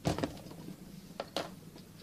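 Handling noise from gluing a ribbon-covered plastic headband: a sharp click at the start, then two short clicks a little over a second later as the small glue tube is handled and set down on the table.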